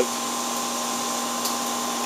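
Steady machine hum with a hiss, holding one pitch with no change.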